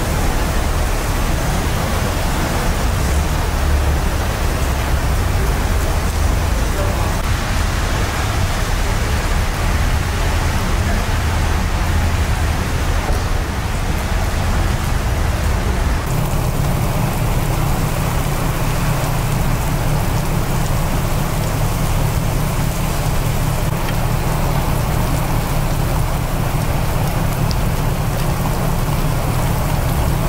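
Heavy rain pouring down steadily onto wet concrete. The rain's sound shifts about halfway through.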